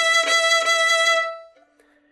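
Violin playing a single held high note using only the last inch of the bow at the tip. The note is full and even in loudness, with faint regular bumps in the tone, and stops a little over a second in.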